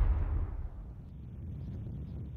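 The tail of a deep whoosh transition sound effect, fading over the first half second, leaving a quieter steady low rumble.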